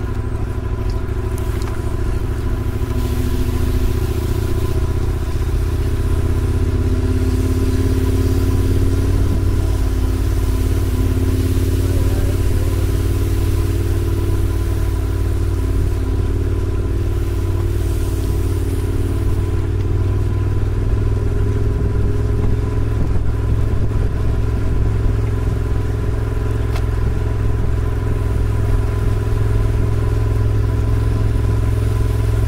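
Steady rumble of wind and road noise picked up by a camera on a racing bicycle's handlebars as it rides in a pack on wet pavement, with tyre hiss and drivetrain whir.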